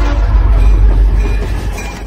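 Train sound effect: a heavy rumbling, clattering railway run with a two-note whistle that stops just after the start, fading away near the end.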